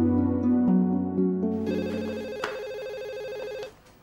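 Soft background music fades, and from about halfway through a telephone rings with a rapid electronic trill for about two seconds, then stops as the call is answered.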